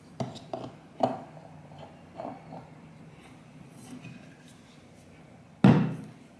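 Metal drink tumbler and its cap being handled: several small clicks and knocks as the cap is fitted back on, then one louder thump near the end.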